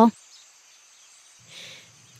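Faint background ambience with a steady, high-pitched drone of insects chirring, and a brief soft sound about one and a half seconds in.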